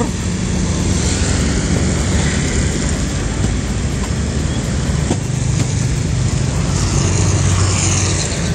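Street traffic at close range: motorcycle and car engines running steadily, with no break in the noise.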